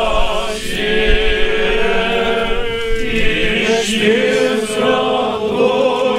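Eastern Orthodox church choir singing a liturgical chant in several voices, holding long sustained chords.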